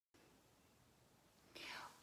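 Near silence with faint room hiss, then a short breathy in-breath about three-quarters of the way in, just before speech begins.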